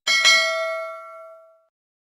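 Notification-bell sound effect: a small bell struck twice in quick succession, then ringing out and fading away over about a second and a half.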